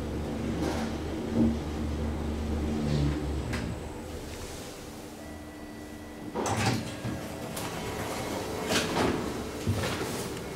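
KONE high-rise traction elevator car travelling with a low steady hum that fades about four seconds in as it stops. Then the car's sliding doors open with clatters and knocks, about six and a half and nine seconds in.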